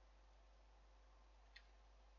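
Near silence: room tone, with one faint single click of a computer mouse about one and a half seconds in.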